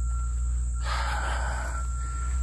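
Steady high drone of crickets and other insects, over a steady low rumble on the microphone, with a brief rustling noise about a second in.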